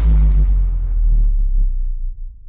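Deep, loud bass rumble at the tail of a TV show's opening music sting, its higher parts dying away while the low boom holds, then fading near the end.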